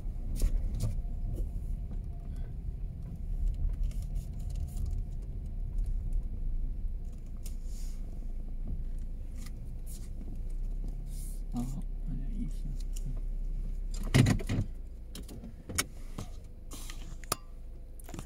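Low rumble of a car rolling slowly and then standing with its engine running, heard from inside the cabin, with scattered small clicks and rattles and a louder clatter about fourteen seconds in.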